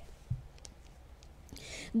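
A quiet pause in a woman's speech: a soft thump and a few faint clicks, then a soft in-breath just before she speaks again.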